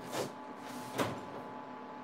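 Oven door of an electric range being opened: a short swish near the start, then a sharp click about a second in.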